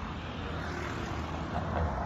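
Street traffic noise: a steady low rumble with a light hiss above it.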